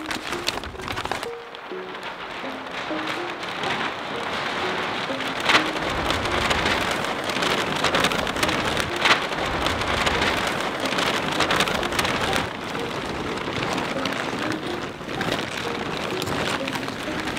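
Large sheets of paper being crumpled and rustled by hands: a dense crackling rustle that builds after a couple of seconds, with a few sharper crackles. Soft music with short melodic notes plays underneath.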